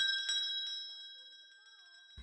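A bell, rung rapidly, ringing out and dying away, fading to near silence about a second and a half in. It is a pub's last-orders bell.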